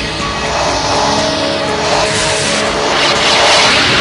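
Opening theme music with a whooshing sound effect swelling up over it, loudest in the second half.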